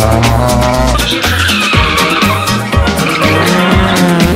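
Background music with a steady beat, and over it a rally car's tyres squealing in a slide, starting about a second in.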